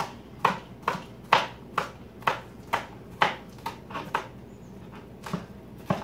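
Knife chopping shallot greens on a cutting board, about two even cuts a second, pausing after about four seconds and then two more cuts near the end.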